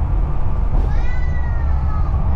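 Steady low road and engine rumble inside a moving RV's cab. About halfway through, a high, drawn-out, slightly falling mew-like cry lasts about a second.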